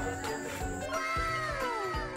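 Background music with steady held notes, overlaid in the second half by a comic sound effect whose pitch slides down twice, in overlapping falls.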